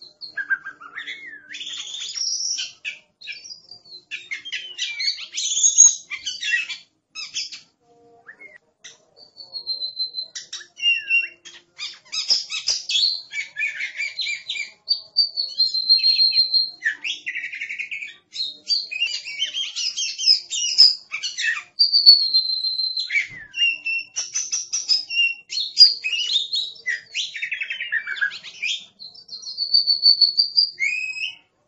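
Oriental magpie-robin singing a long, varied song of clear whistles, some held briefly, mixed with rapid chattering phrases, with a short pause about eight seconds in.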